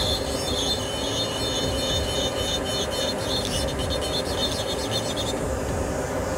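Dental lab micromotor handpiece spinning a carbide bur at high speed, a steady high-pitched whine of several tones, as it grinds the teeth of a PMMA full-arch prototype to slim them. The whine stops shortly before the end, over a steady low hum.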